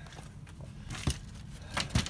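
Wooden lattice trellis panel being handled and moved aside, with low shuffling and two sharp knocks, one about a second in and one near the end.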